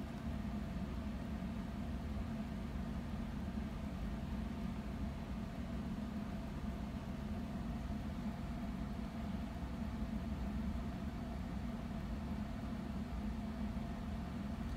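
Computer cooling fans running with a steady, even hum while the PC boots into Windows setup.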